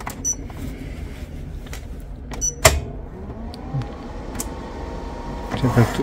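Lewanda B200 battery tester: two short electronic beeps as its keypad is pressed, then a sharp click. After that a whine rises in pitch and settles into a steady tone as the load test on the battery begins.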